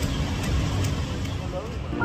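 City street ambience: steady traffic noise with a low rumble, and faint voices in the background.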